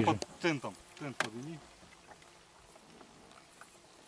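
A man's voice speaking briefly, then faint background noise for the rest of the time.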